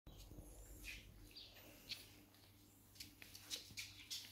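Faint, short high-pitched animal chirps now and then, with a few light clicks near the end, over a low steady hum.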